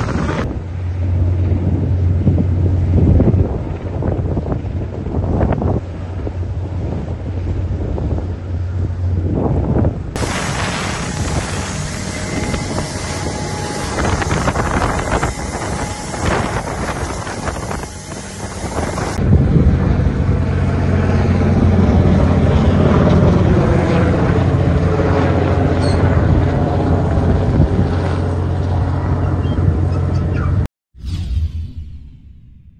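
Boat engines running with wind buffeting the microphone and water rushing past the hull, a steady low hum under rushing noise. The sound changes abruptly twice, at about a third and two thirds of the way through, as different clips are cut together.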